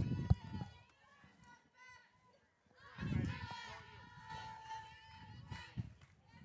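Faint, distant voices of softball players calling out and chanting from the field and dugout, about halfway through, with wind rumbling on the microphone.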